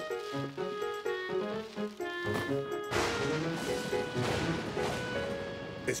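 Gentle cartoon background music, with a long rumble of thunder coming in about three seconds in and rolling for nearly three seconds under the music.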